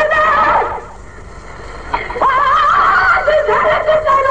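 A man chanting a Sindhi naat in a drawn-out voice whose pitch wavers, breaking off for about a second before taking up the line again.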